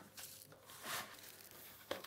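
Faint rustling and scraping of gloved hands rubbing a dry spice rub onto a beef shank in a steel pan.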